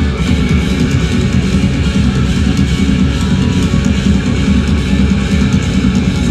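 Live rock band playing an instrumental passage with electric guitars and drum kit, loud and steady, heard over a festival PA from within the crowd.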